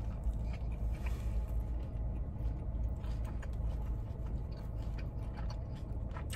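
A person biting into and chewing a soft carne asada street taco dressed with salsa: quiet, irregular wet chewing clicks over a steady low background rumble.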